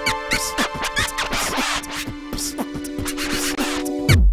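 Background electronic music: a steady drum beat under a held synth chord, with record-scratch sounds cutting in over it.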